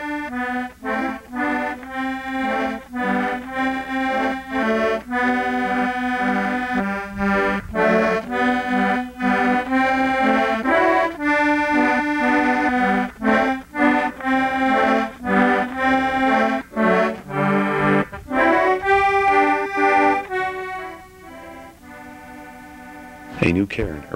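Button accordion playing a tune: a melody over a bass line of notes and chords that changes with each beat. The playing drops away about three seconds before the end.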